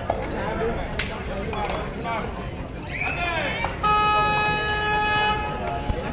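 Voices shouting over crowd noise, then a horn sounds one steady note for about a second and a half, louder than the shouting.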